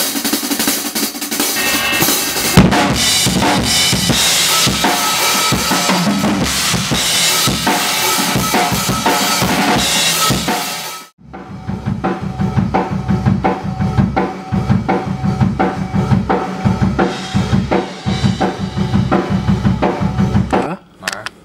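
Yamaha hybrid maple drum kit played hard in a rock pattern, with heavy cymbal crashes over the drums. The playing breaks off sharply about eleven seconds in, then picks up again as a quick, even run of kick and snare hits.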